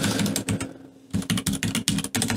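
Computer keyboard typing: a quick run of keystrokes, a short pause just before the one-second mark, then another run.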